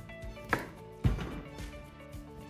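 Kitchen knife chopping the ends off zucchini against a cutting board: two cuts about half a second apart, with quiet background music underneath.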